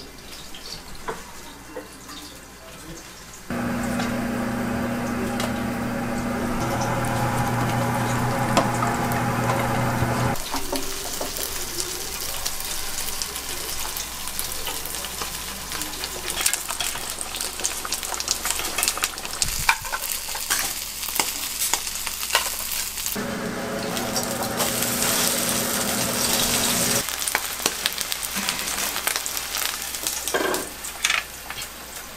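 Kitchen cooking sounds: food sizzling in hot pans, with frequent clinks and taps of utensils and cookware. In two stretches a steady low hum runs underneath.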